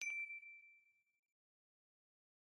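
Notification-bell sound effect from a subscribe end-screen animation: a few quick clicks, then a single bright ding that rings for about a second and fades away.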